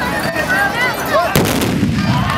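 A tbourida troupe's black-powder muskets fired together as one volley, a single sharp blast about a second and a half in, followed by a low rumbling echo.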